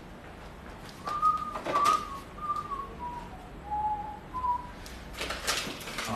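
A person whistling a short tune of about six held notes that step mostly downward, with light clatter from brushes and paint tubes being handled in a toolbox, loudest near the end.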